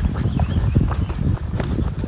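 Hikers' footsteps and trekking-pole tips knocking irregularly on stone steps, over a low rumble.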